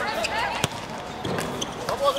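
A football struck hard once, a single sharp thud about two-thirds of a second in, with players' voices shouting around it.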